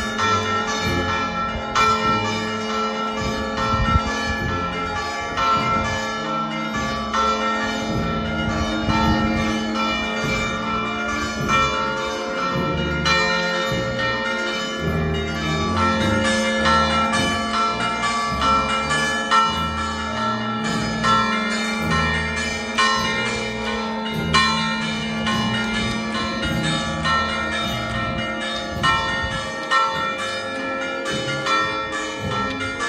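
Church bells pealing: repeated, overlapping strikes whose tones ring on into one another.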